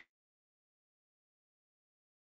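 Dead silence: the audio feed has cut out completely, with the video frozen.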